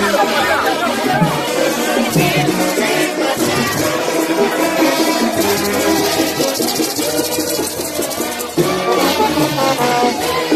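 Loud, steady music heard from within a street crowd, with crowd voices mixed in.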